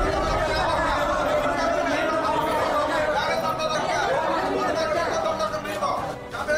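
A group of people talking over one another: a steady babble of overlapping voices.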